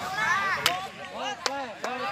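Hands slapping together in high fives: three sharp slaps, about two-thirds of a second in and twice near the end, among excited voices.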